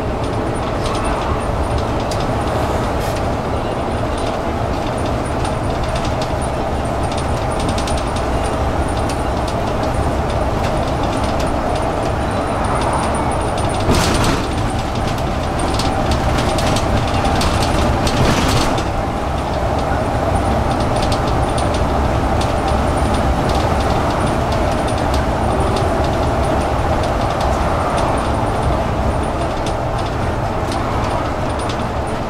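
City bus running, heard from inside the passenger cabin: a steady engine and drivetrain drone with a whine, road noise and small rattles, and two short hisses of air near the middle.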